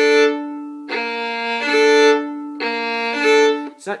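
Solo violin bowing a slow series of double stops, two strings sounding together, the notes changing every second or so. The playing stops shortly before the end.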